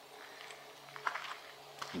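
Quiet outdoor background with a faint steady low hum and a few soft clicks about a second in and again near the end.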